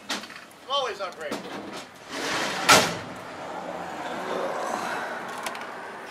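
A sharp knock a little before the middle, then a steady trickle of Marvel Mystery Oil flush draining from the motorcycle engine into a plastic drain pan.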